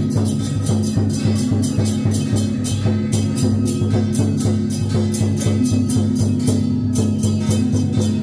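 Loud procession music with drums and a fast, steady beat of cymbal-like strokes, about four a second, over a held low tone.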